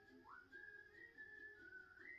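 Near silence, with a faint thin high tone that wavers up and down in pitch and rises once shortly after the start.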